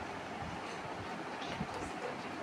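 Faint steady room noise with a few soft, low thumps about half a second in and near the end.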